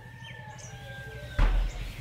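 A faint bird call, one long drawn-out call held at a steady pitch, then a short low thump about one and a half seconds in.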